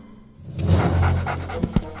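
A cartoon reindeer panting like a dog, a short run of breaths after a brief hush, with music underneath. A few short knocks come near the end.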